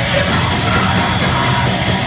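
Heavy metal band playing live: distorted electric guitar, bass and drums, loud and dense, with a harsh yelled vocal over the top.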